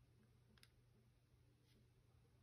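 Near silence with two faint clicks, about half a second in and near the end, from a smartphone being handled.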